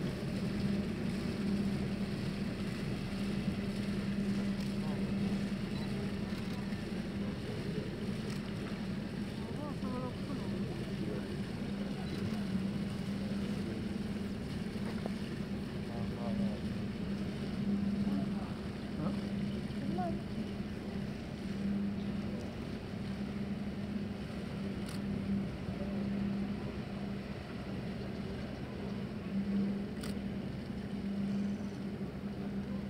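Engines of several military patrol boats running with a steady drone as the boats get under way across the water, with faint voices in the background.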